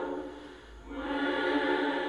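Choral background music: sustained sung chords that fade about half a second in, then swell back as the next chord comes in.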